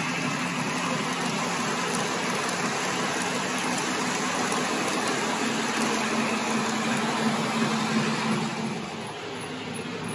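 Lionel O-gauge passenger cars rolling fast over three-rail track, a steady rumble with a hum that grows louder, then dropping away about nine seconds in as the last car passes.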